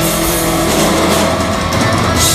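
Live metal band playing loud, with distorted electric guitars and bass holding sustained chords over a steady low end. The cymbal wash thins out about halfway through.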